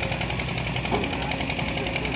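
Small engine-driven water pump running steadily with a fast, even beat.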